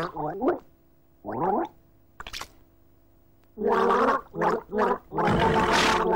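Throaty gargling with a voice sounding through it, comically put on for a gargling horse. It comes in short bursts, a couple early on and a longer, rougher run from about three and a half seconds in.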